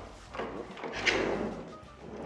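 A white pocket sliding door being slid along its track by hand, a rolling slide that swells and fades over about a second.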